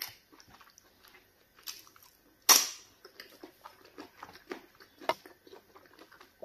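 Close-up mouth sounds of eating egusi soup and pounded yam fufu by hand: wet chewing and lip smacks with small clicks between them, the loudest smack about halfway through and another near the end.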